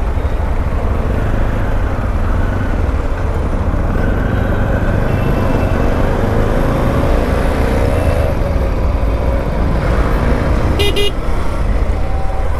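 Bajaj CT 125X's single-cylinder engine running at low speed in stop-and-go traffic, a steady low rumble with road noise. A vehicle horn gives one long honk of about two and a half seconds in the middle, its pitch rising slightly, and a brief burst of high clicks comes near the end.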